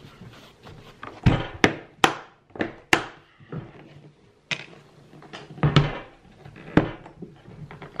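Apache 2800 hard plastic case being closed, lifted and set back down on a wooden table: a series of irregular knocks and clicks, about eight in all, with handling noise between them.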